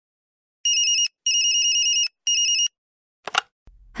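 Electronic telephone ringing: three bursts of a fast-pulsing ring, the middle burst longest, then a single click shortly before the call is answered.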